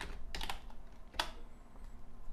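A few keystrokes on a computer keyboard, typing a short word.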